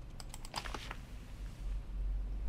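Computer keys tapped several times in quick succession during the first second, then a low steady hum.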